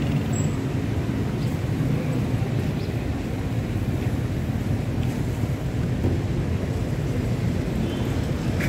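Steady low rumble of outdoor street ambience: road traffic mixed with wind on the microphone.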